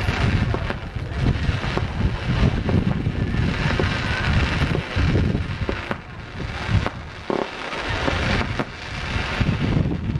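Fireworks going off in a rapid, irregular run of bangs and crackles, over a gusting rumble of wind on the microphone.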